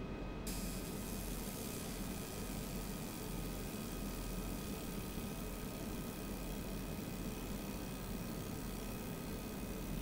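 50 W fiber laser marker ablating a mirror-finish metal dog tag: a steady hiss with faint steady tones that starts about half a second in, over a low mains hum. This is a matting pass that turns the glossy surface matte.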